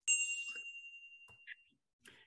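A bell-like 'ding' sound effect for a notification bell being clicked: one sudden high ringing tone that fades away over about a second and a half, with a faint short blip near the end.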